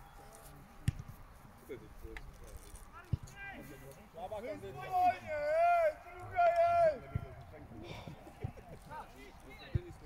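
Shouts of football players carrying across the grass pitch, loudest in the middle, with a few sharp thuds of the ball being kicked scattered through.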